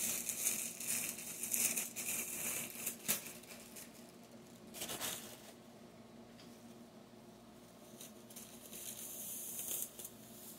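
Thin plastic crinkling and rustling as a disposable shower cap is pulled out of its bag, with a couple of sharp crackles in the first half, a quieter spell in the middle, and more rustling near the end.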